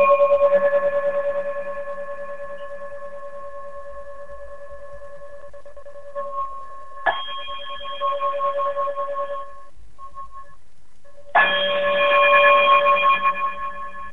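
A sign-off chime struck and left to ring, its bell-like tone fading with a slow wavering beat; it is struck again about seven seconds in and once more a couple of seconds before the end.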